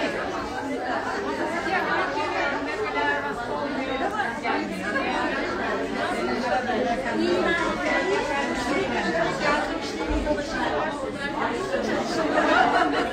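Crowd chatter: many people talking at once, their overlapping voices forming a steady hubbub.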